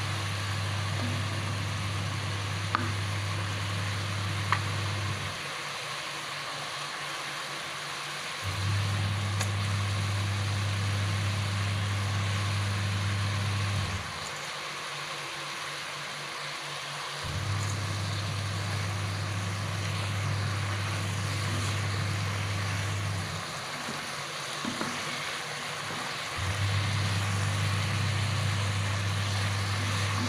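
Chili sambal frying in a wok with whole fish in it, a steady sizzling hiss. A low hum runs beneath it, dropping out and coming back three times.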